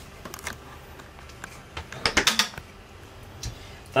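RV refrigerator and freezer doors being swung shut: a few light clicks, then a louder cluster of knocks about two seconds in.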